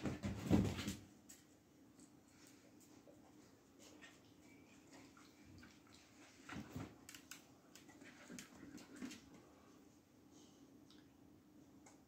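Two dogs, a young Portuguese Podengo and an older Boxer-Pointer cross, play-fighting on a rug: soft scuffling, mouthing and claw clicks. The loudest flurry comes in the first second, and shorter ones follow a little past halfway.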